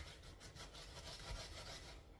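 Onion being grated on the fine side of a metal box grater: a faint, quick run of repeated rasping strokes.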